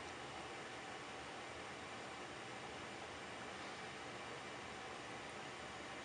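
Steady, faint, even hiss of room tone with nothing standing out.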